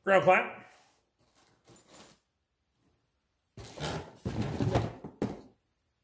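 A brief vocal sound at the start, then about two seconds of rustling and knocking as welding cables and their plastic packaging are handled.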